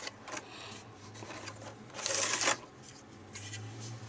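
A clear plastic blister tray being handled as a model is pulled out of it: plastic rubbing and crackling, with a few small clicks and one louder scraping rustle about two seconds in.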